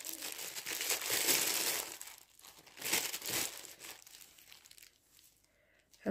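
A packet of chickpea flour crinkling as it is handled and opened: about two seconds of rustling, a shorter burst about three seconds in, then fading.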